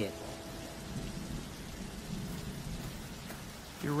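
Steady heavy rain falling, with a low rumble underneath. A few held tones fade out in the first second and a half.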